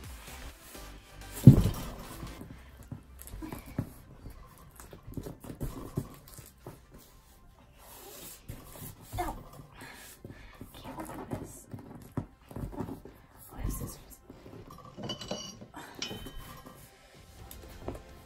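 Background song with vocals over the rustling and handling of polyester fiber-fill stuffing being worked into a body pillow. One loud thump comes about a second and a half in.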